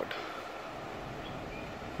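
Steady, even rushing background noise of the open air, with no distinct events.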